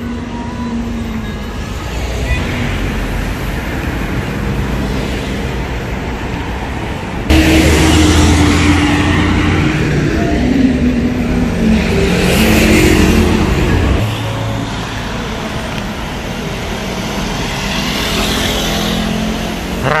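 Street traffic noise: cars running and passing along a city road. A louder vehicle engine, with a low hum and shifting pitch, comes in abruptly about a third of the way through and drops away just as suddenly after about seven seconds.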